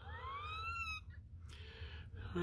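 A newborn kitten mewing once: a faint, high-pitched cry that rises in pitch and lasts about a second.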